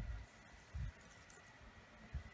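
Hands smoothing washi tape down onto a paper planner page: faint handling with two soft low thumps, one at the start and one just under a second in.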